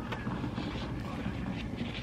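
Steady background hiss and hum from a device running in the room, loud enough to colour the recording, with faint handling sounds from a plastic screen-protector film being peeled off an iPad.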